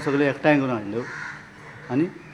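A man speaking loudly and emphatically in two short phrases with a pause between them; the words are not transcribed.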